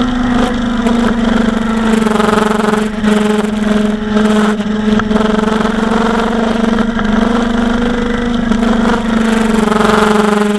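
Kawasaki Ninja 1000's inline-four engine running at a steady cruise on the highway, its note rising and falling slightly in pitch.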